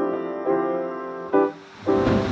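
Background piano music: notes and chords struck about every half second, with a short gap near the end.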